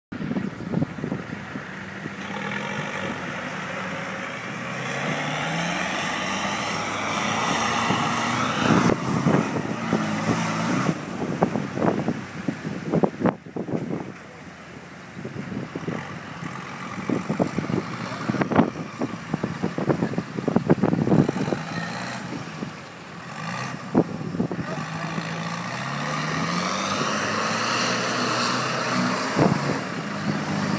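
Off-road 4x4 engine revving up hard again and again as the truck tries to climb a steep muddy bank, the pitch rising with each push and dropping back. In two stretches the engine is joined by a rapid clatter of knocks as the truck bounces and scrabbles on the slope.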